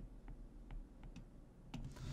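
Faint, scattered taps and clicks of a stylus on a tablet as words are handwritten, about four ticks spread irregularly over two seconds.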